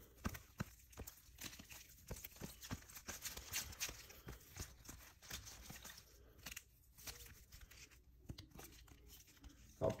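Faint rustling and irregular light clicks of trading cards in plastic sleeves and hard holders being flipped through by hand.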